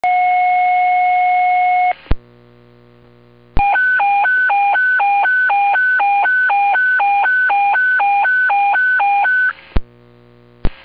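Fire department dispatch alert tones received over a scanner radio. A steady tone sounds for about two seconds and stops with a radio click. After a short pause comes a warbling tone that switches between a high and a low pitch about twice a second for some six seconds, then another click.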